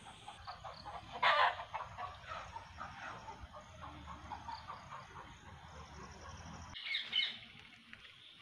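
Outdoor ambience full of short, repeated chirping animal calls, with a louder call about a second in and another near the end. A low background rumble cuts off suddenly shortly before the end.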